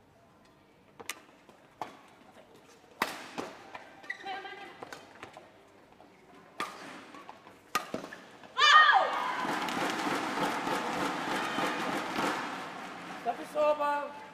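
Badminton rally: about eight sharp racket strikes on the shuttlecock at uneven gaps, with shoe squeaks on the court. About eight and a half seconds in, a loud shout falls in pitch, and a crowd cheers for several seconds as the point is won.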